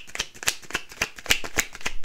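A deck of oracle cards being shuffled by hand: a quick, uneven run of crisp card slaps and flicks, about six a second.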